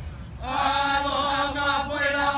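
Hawaiian hula chanting: after a short pause, voices take up one long held note about half a second in and sustain it with only slight wavering.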